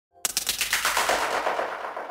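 A rapid rattle of sharp, gunfire-like cracks, about ten a second, starting just after the beginning and dying away over a second and a half: an intro sound effect for a logo reveal.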